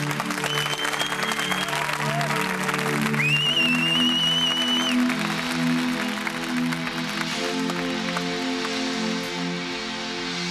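Sustained keyboard chords opening a live rock song, the chord changing about three and a half seconds in and again after about seven seconds, over audience applause. Two high whistles rise above it, the second one longer.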